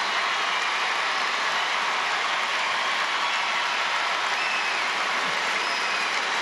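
Large audience applauding steadily, a dense, even wash of many hands clapping.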